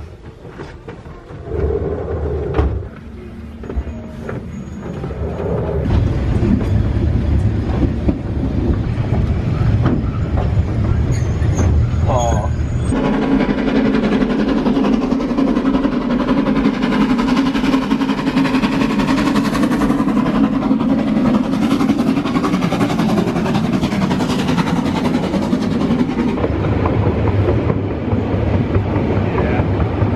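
Narrow-gauge steam train running on the rails: a steady rumble of the carriage and wheels that grows louder about five seconds in and stays loud.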